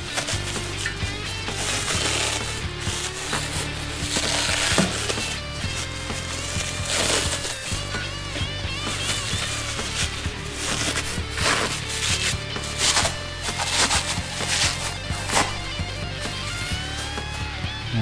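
Background music with a steady bass line, over plastic wrapping rustling and crinkling in short bursts as parts are pulled out of it by hand.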